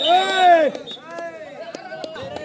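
A man's long shout that rises and falls in pitch, then a shorter call about a second in, over other voices.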